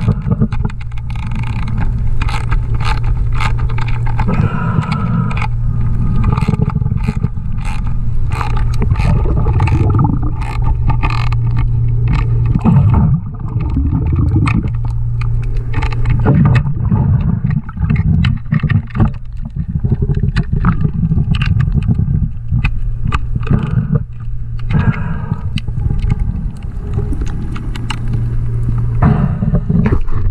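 Underwater work sounds: many sharp clicks and scrapes of a hand tool and hands on the metal fittings under a yacht's hull, over a steady low rumble.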